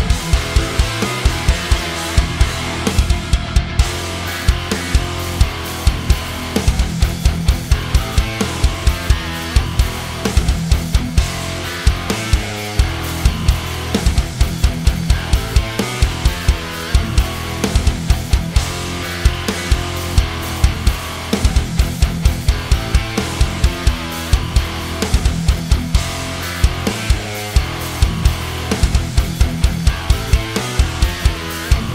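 High-gain metal guitar riff played on a PRS Custom 24 through Neural DSP Quad Cortex amp presets. It is mixed with sampled drums, whose fast, regular hits run throughout, and a bass track.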